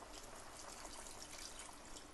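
Faint trickle of about a cup of water being poured from a bowl into a pot of boiling curry.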